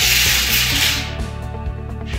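A plastic ruler and a string of plastic beads are slid and rubbed across a wooden tabletop, a loud scraping noise over about the first second. Background music plays throughout.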